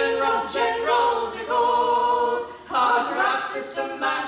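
Three women singing unaccompanied in close harmony, a folk trio holding sustained chords in sung phrases with short breaths between them.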